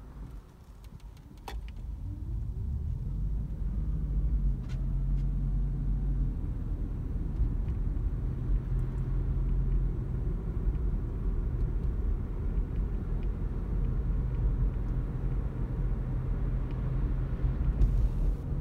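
Cabin sound of a Toyota Auris Hybrid on the road: low drivetrain and road rumble, quiet at first, then growing louder as the car pulls away about two seconds in and holding steady. A single sharp click sounds early on.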